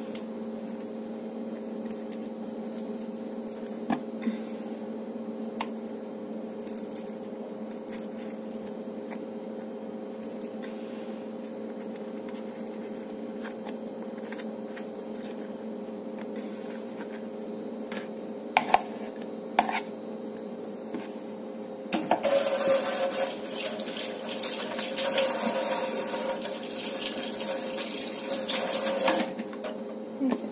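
A steady low hum, with a few light clicks and knocks as avocado is scooped from its skin with a spoon into a plastic tub. About two-thirds of the way through, a much louder, uneven rushing noise starts and runs for about seven seconds before stopping.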